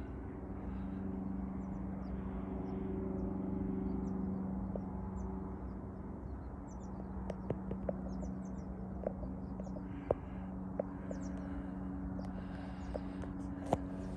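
Faint bird chirps and calls scattered over a steady low hum, with a few light clicks.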